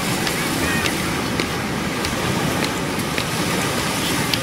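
Small waves breaking and washing up a sandy beach, a steady rush of surf.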